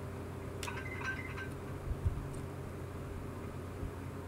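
Steady low electrical hum of room and recording noise, with a faint click about half a second in and a soft low thump about two seconds in.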